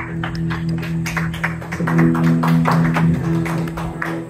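Live solo guitar playing an instrumental passage of a blues song: low notes held under a quick run of short, sharp picked or tapped strokes.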